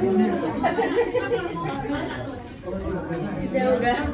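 Several people talking over one another around a table: overlapping conversational chatter.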